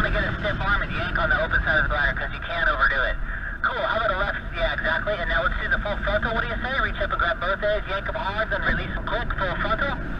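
A voice speaking over a two-way radio, thin and muffled so that the words are hard to make out, with a short break a little past three seconds in. A low steady rumble of wind on the microphone runs underneath.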